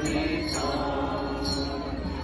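A mixed choir of carolers, men and women, singing together, holding a long chord.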